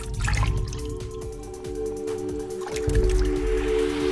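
Logo-reveal music: a held synth chord under water splash and drip sound effects, with a low swell at the start and another near three seconds in.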